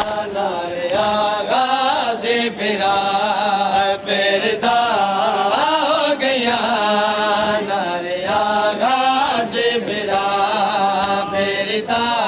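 A nauha, a Shia mourning lament, chanted in a sustained, melodic voice with a steady drone beneath it. Sharp strikes of hands beating on chests in matam are scattered through the chant.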